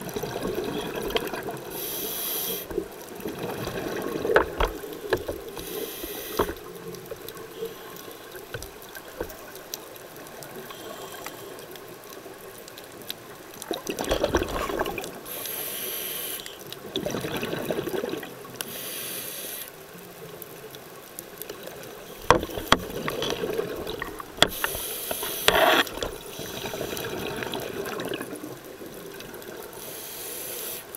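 Scuba breathing heard underwater: several hissing inhalations through a regulator and gurgling bursts of exhaled bubbles, with a few sharp clicks.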